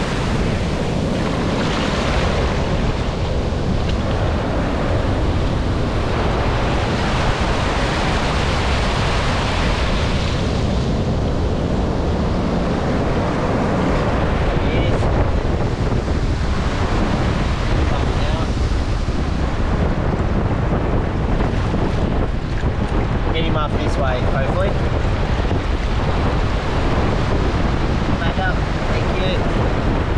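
Shallow surf washing up and over the sand, rising and falling as each wave comes in, with wind buffeting the microphone in a steady low rumble.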